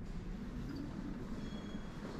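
Steady low rumble of background room noise. Faint thin high tones come in about a second and a half in.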